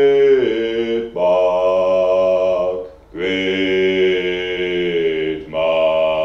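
A man's voice chanting long held notes on a steady pitch, each about two seconds, with short breaks for breath between them.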